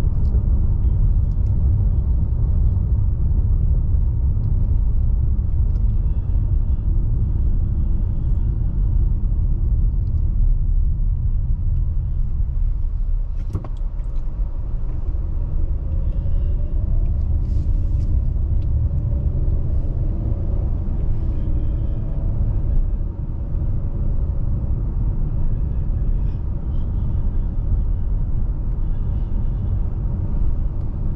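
Steady low rumble of a car driving on a paved road, heard from inside the cabin: tyre and engine noise, with one brief click about halfway through.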